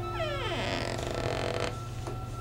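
A pitched sound that slides steeply downward, then turns into a rough, grating stretch and cuts off sharply near the end, over a soft sustained music tone.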